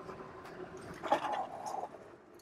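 Electric bike braking hard from about 25 mph on its mechanical brakes: faint riding noise, then a louder stretch of rubbing noise about a second in as it stops.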